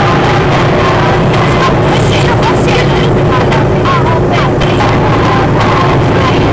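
Loud, steady rushing roar of floodwater running over a road, with brief voices in the middle.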